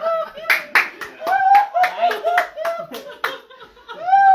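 A run of hand claps, about a dozen at roughly four a second that stop a little after three seconds, over high-pitched voices crying out in excitement as a surprise reunion is greeted.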